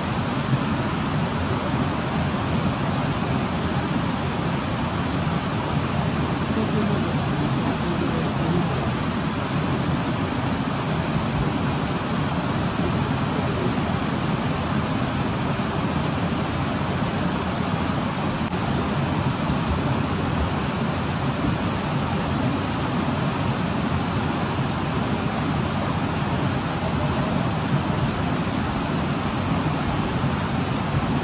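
A mountain river rushing steadily, an even noise with no breaks.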